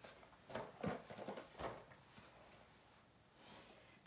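Faint knocks and rustles of grocery packaging being handled, a few light taps in the first second and a half, over quiet room tone.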